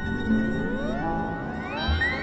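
Ambient electronic music from a VCV Rack virtual modular synthesizer patch: sustained tones and their echoes, with many pitches gliding upward together from about half a second in.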